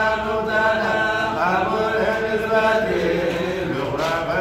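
A man's voice chanting a Hamallist Sufi zikr (kassida) in long held, wavering notes.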